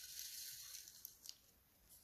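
Near silence, with faint rustling of hands handling a small luggage scale and its pull-out tape, and one soft click a little over a second in.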